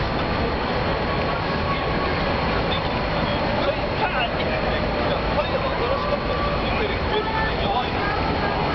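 Steady background din of a truck lot: large diesel truck engines running, with indistinct voices of people nearby.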